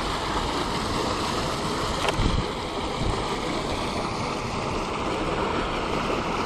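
Steady rush of water pouring out of a corrugated culvert pipe into a river, with a brief low knock about two seconds in.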